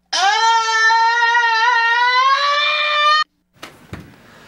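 A young man's long, loud scream, one held vowel that rises at first and then stays at a high, steady pitch, cut off suddenly about three seconds in. This is the scream of the "It's Wednesday, my dudes" meme. A faint knock follows just before the end.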